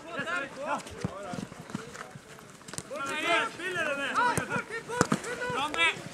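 Footballers shouting and calling to each other on the pitch, voices rising in short bursts, with a few short sharp knocks mixed in.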